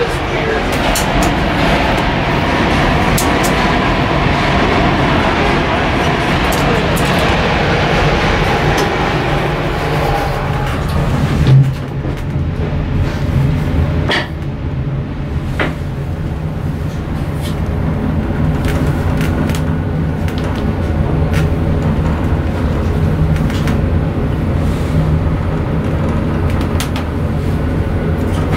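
Traction elevator car riding up, heard from inside the cab: a steady low hum of the car in motion, with one sharp thump a little under halfway through and a few light clicks after it.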